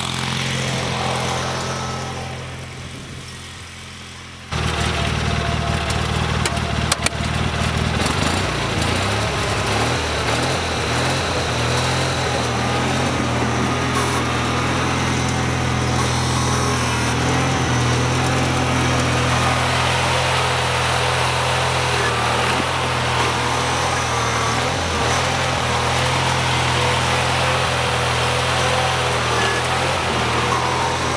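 Wheel Horse 520-H garden tractor engine running steadily as the tractor pushes snow with its front plow blade. The sound fades over the first few seconds, then at about four and a half seconds comes in suddenly close and loud and holds steady.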